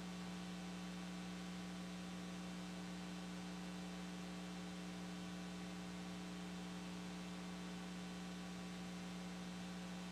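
Faint, steady mains electrical hum, an unchanging low buzz with nothing else over it.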